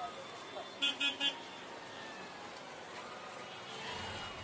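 Faint street traffic with three quick horn toots about a second in.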